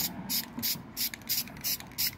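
Rust-Oleum LeakSeal clear aerosol can sprayed in short rapid hissing bursts, about three a second, putting a sealing coat on a 3D-printed float.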